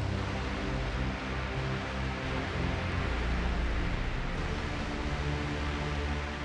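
Akai MPC One+ Hype synth plugin, 'Almighty' preset, played from the drum pads: a low, sustained synth sound with held notes that change pitch several times.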